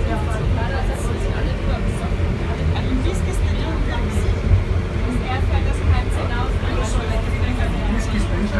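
Inclined lift cabin climbing the ski-jump hill, with a steady low rumble of its running, and people talking indistinctly in the cabin.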